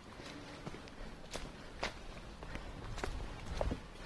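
Footsteps of a person walking at a steady pace, about two steps a second, fairly faint.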